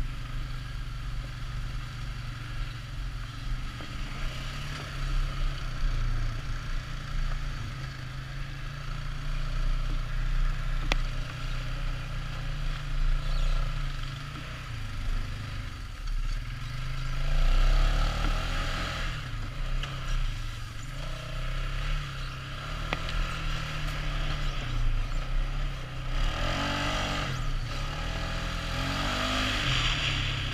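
All-terrain vehicle engine running under changing throttle on a rough dirt trail, its pitch rising and falling as the rider speeds up and slows down. It gets loudest about halfway through, with another rise in pitch near the end.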